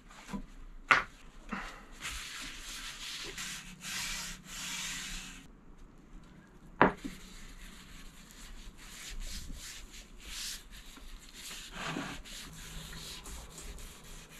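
A cloth rubbing oil into a wooden board in repeated swishing strokes. Two sharp knocks stand out, about a second in and about halfway through.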